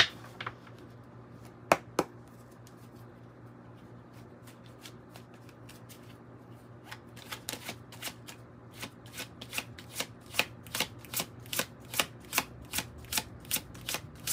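A deck of tarot cards being shuffled by hand: a few sharp card snaps near the start, a lull of several seconds, then a steady run of card slaps at about three a second through the second half.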